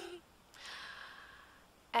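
A woman's laugh trailing off, then a breathy sigh-like exhale of about a second that fades away.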